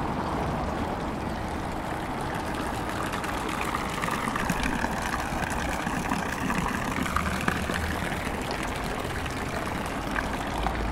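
Street fountain water pouring and splashing into its stone basin, over a steady background of town traffic.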